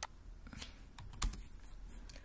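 A few separate computer keyboard keystrokes, the loudest a little over a second in.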